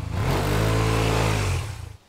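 Honda Silverwing's 582 cc liquid-cooled four-stroke twin revved once from idle: the engine note rises and then falls back over about a second and a half, fading near the end.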